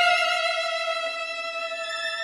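Music: a single high bowed violin note held with a slight vibrato. It shifts to a new note at the start and slowly fades.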